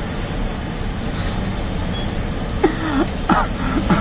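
Steady city street traffic rumble. In the last second and a half, a man laughs in short bursts, stifled behind his hand.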